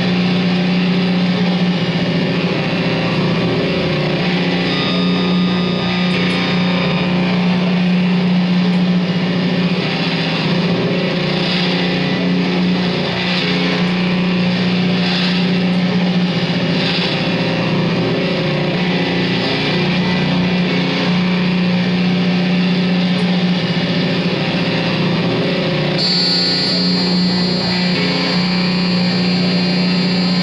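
Loud, dense sustained drone from electric guitars and electronics in an experimental noise piece: a steady low hum under layered noise and held tones. A cluster of high steady tones comes in about four seconds before the end.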